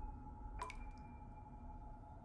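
A single water drip about half a second in, over a faint, steady low drone.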